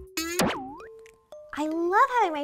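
A cartoon-style boing sound effect whose pitch slides down and then back up, followed by a couple of short held notes of a transition jingle. A voice starts near the end.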